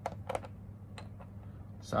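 Cuisenaire rods being set down and arranged on a whiteboard: a few short clicks and taps as the rods touch the board and each other.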